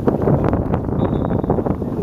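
Wind buffeting the microphone: loud, uneven noise with irregular gusty flutter.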